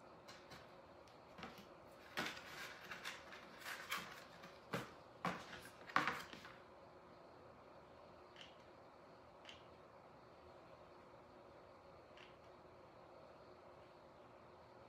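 Light clicks and knocks from a hot glue gun being handled and worked over a canvas on a tabletop: a quick cluster through the first six seconds, the loudest near the end of it, then low room tone with a few faint ticks.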